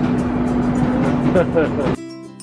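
Arcade game machines playing electronic music and sound effects over a steady drone, with gliding electronic tones and a busy room din.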